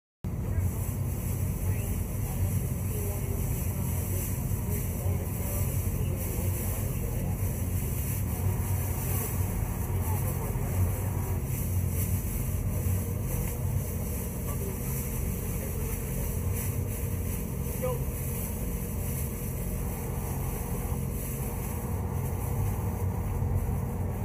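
Steady low rumble of a running engine, with faint indistinct voices in the background.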